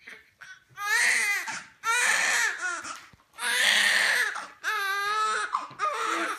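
A newborn baby with a cleft lip and palate crying: repeated high, wavering wails of about a second each, with short gasping breaks between them, starting about a second in.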